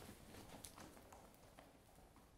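Near silence with a few faint footsteps walking away, fading out within the first second or so.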